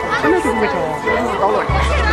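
A woman's voice and other people chattering close by over loud dance music; a heavy bass beat comes in near the end.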